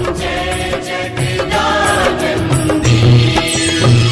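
Hindu devotional aarti music: chanted singing over instruments, with repeated drum strokes.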